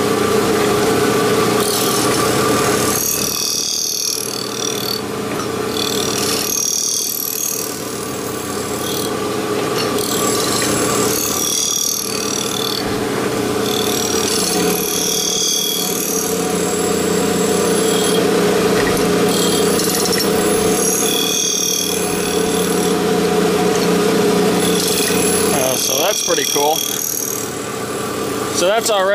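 An Abrasive Machine Tool Co. 3B surface grinder runs with a steady motor and spindle hum while its 12-inch wheel grinds a steel knife blank in passes. The bright grinding noise breaks off briefly about every four to five seconds, as the table reaches the end of its stroke and the wheel comes off the work.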